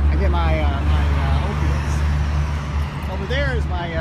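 City street traffic: a steady low engine rumble from nearby vehicles, easing just before the end, with people's voices over it.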